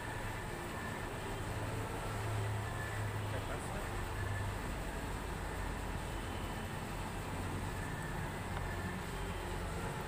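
Steady low background noise with a hum underneath and no distinct tool clicks.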